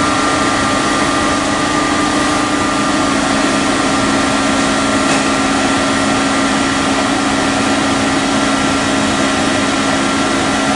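Heckler & Koch BA 40 vertical machining center running: a steady mechanical hum with several constant whining tones that do not change in pitch.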